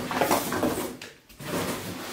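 Cardboard scooter box rustling and scraping as a hand rummages inside it, in two bouts with a short lull just past a second in.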